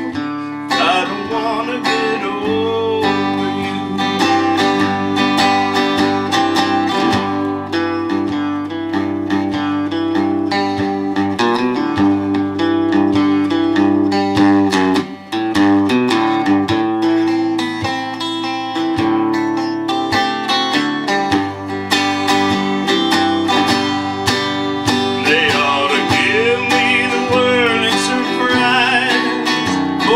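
Country song played on a Telecaster-style electric guitar: an instrumental passage of quickly picked single notes and chords, with a brief dip about halfway through.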